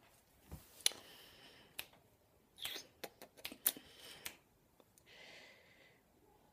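Faint clicks and rustles of a flat iron being handled and turned through a section of hair while curling it, with a short soft hiss about a second in and again near the end.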